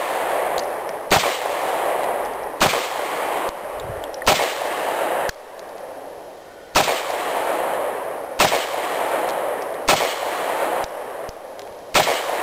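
Taurus PT-908 9mm semi-automatic pistol fired six times at an uneven pace, about one and a half to two and a half seconds apart, with a seventh shot right at the end. Each report trails off slowly.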